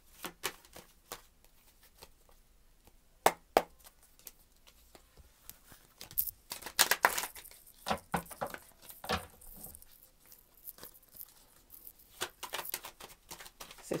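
A deck of tarot cards being shuffled by hand: intermittent rustling and flicking of the cards, with two sharp snaps a few seconds in and busier spells of shuffling in the middle and near the end.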